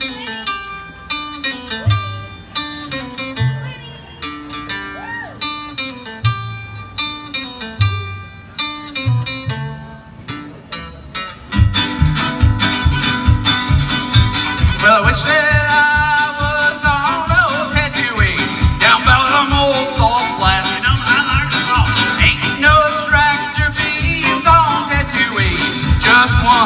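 A small acoustic string band of guitar, fiddle and a home-built instrument starts a song. It opens quietly with plucked notes over a slow, low bass line. About twelve seconds in the full band comes in, louder, on a steady, fast beat.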